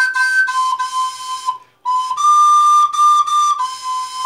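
Plastic soprano recorder playing a simple melody in short, tongued notes that mostly repeat one pitch. There is a brief gap for breath a little before halfway, then a few notes a step higher before it drops back.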